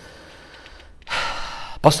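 A man draws one audible breath into a close microphone about a second in, after a short lull. His speech resumes just before the end.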